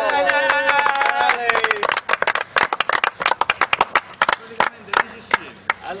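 A voice holding a long drawn-out call, dropping in pitch at the end, then a small group of people clapping their hands for about four seconds.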